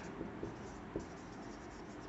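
Faint sound of a marker pen writing on a whiteboard, with a few light ticks in the first second.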